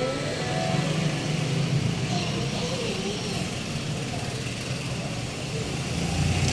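A steady low hum like a vehicle engine running, with faint voices and music in the background.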